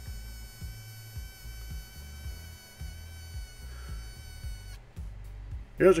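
Pulsed MIG welder (HTP Pro Pulse 300) welding aluminum: a steady high-pitched buzz from the pulsing arc over an irregular low crackle. The buzz cuts off suddenly about three-quarters of the way in as the arc stops.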